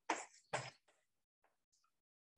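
A man briefly clearing his throat: two short bursts within the first second, the first louder.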